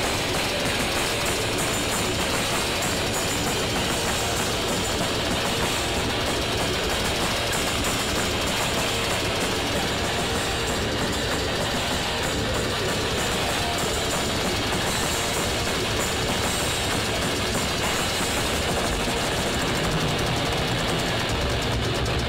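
Grindcore band playing live, heard from the crowd: distorted electric guitar over drums, dense, loud and unbroken.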